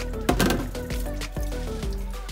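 Background music with a bass line and held notes that change pitch in steps.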